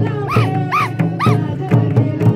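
Oraon tribal folk song music with a regular drum beat of about two strikes a second under sustained tones, and three short, arching high calls in quick succession in the first half.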